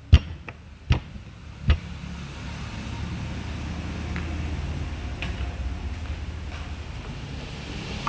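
Three sharp knocks in the first two seconds, then a steady low machinery hum that grows a little louder and holds.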